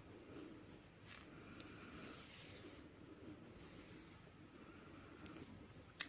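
Near silence, with faint rustling of yarn and a metal needle drawn through knitted fabric as the edge stitches are sewn through one by one.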